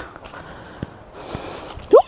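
A boot squelching and sucking in deep, wet mud as it is worked free. A short rising exclamation of voice comes at the very end.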